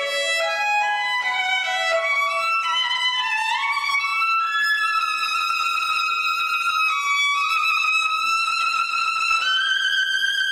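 Solo violin playing a soft (piano) passage, given as an example of one way to play piano. It starts with a string of shorter stepping notes, slides up about three and a half seconds in, then moves on to longer held high notes.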